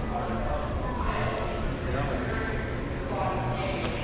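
Indistinct chatter of other visitors in a large, echoing exhibition hall, over a steady low rumble.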